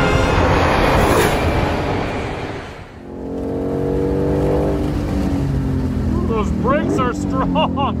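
A musical intro fades out, then, heard inside the cabin, the Shelby GT500's supercharged 5.2-litre V8 runs with its note slowly falling as the car slows under a light application of the brakes. A voice comes in over the engine near the end.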